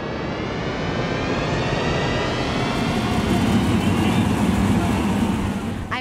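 Race car engine running hard, growing steadily louder and rising slowly in pitch, then cut off suddenly.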